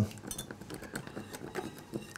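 Light, irregular clicks and scrapes of kitchen utensils stirring: a whisk in a small metal saucepan and a wooden spoon in a glass mixing bowl.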